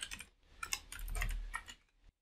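Typing on a computer keyboard: a few keystrokes, a short pause about half a second in, then another run of keystrokes that stops shortly before the end.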